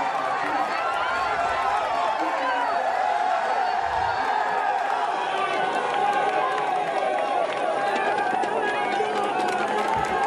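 Roadside crowd of cycling spectators shouting and cheering the passing riders, many voices overlapping in a steady din.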